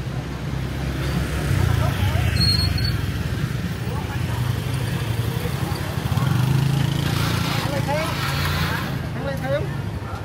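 Motor scooter engines passing close through a narrow street, loudest about two seconds in and again around six to seven seconds in.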